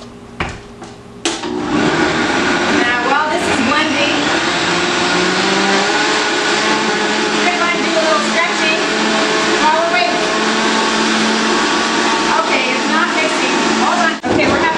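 Countertop blender: a few clicks, then the motor starts about a second in and runs loud and steady, its pitch shifting at first and then settling, as it churns a thick load of ice cream, frozen strawberries, milk and cream cheese.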